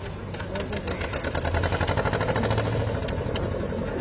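Boat engine running with a rapid, even beat, growing louder about a second in and easing off near the end, with voices of people on board behind it.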